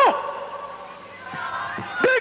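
A man's shouted voice over the stage PA cuts off just at the start. It gives way to a quieter blend of crowd voices and faint music from the live show.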